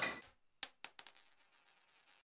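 A bright, high metallic chime sound effect: a ringing shimmer struck once with a few quick lighter taps after it, dying away within about a second.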